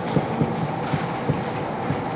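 Dry-erase marker writing on a whiteboard: a string of short, irregular strokes over a steady background hiss of room noise.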